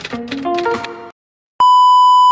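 Upbeat intro music for about a second that cuts off abruptly, then a short gap of silence and a loud, steady electronic test-tone beep, the bars-and-tone sound of a TV test pattern, used as a glitch transition.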